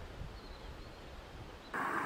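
Faint low rumble of a calm river, then a sudden switch near the end to the loud rush of a whitewater rapid.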